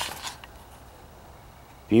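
Brief rustle of the camera being handled and set down, then a quiet, steady background. A man's voice starts speaking just before the end.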